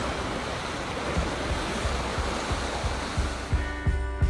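Steady noise of sea surf washing, with music fading in: low drum beats from about a second in and sustained chords near the end.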